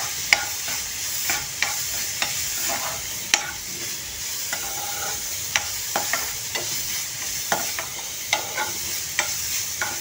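Chopped onion frying in oil in a stainless-steel pan, sizzling steadily while being sautéed toward brown. A steel spoon stirring the onion scrapes and clinks against the pan at irregular moments, once or twice a second.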